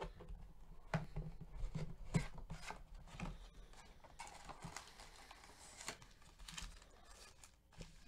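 Hands opening a cardboard trading-card hobby box: a string of sharp cardboard cracks and snaps as the box is pulled open, then a longer rustle of foil-wrapped card packs being lifted out of it.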